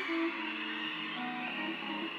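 Soft live instrumental music with sustained chords, a piano playing in the band's intro.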